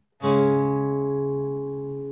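Acoustic guitar: after a split-second of silence, one chord is struck and left ringing, fading slowly.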